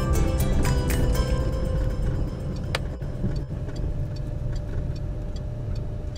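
Background music that thins out to a quieter stretch in the middle, over a steady low rumble of road noise from a moving car.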